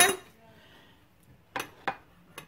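Two short clinks of kitchenware, a third of a second apart, about a second and a half in.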